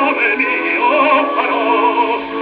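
Operatic baritone with orchestra, singing with vibrato from an acoustically recorded 78 rpm disc played on a 1918 wind-up Columbia console gramophone. The sound is thin and horn-like, with no deep bass and no high treble.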